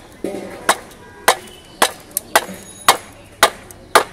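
A wooden stick striking the back of a blade wedged into a large catla's head, splitting the head: sharp knocks at a steady pace, a little under two a second.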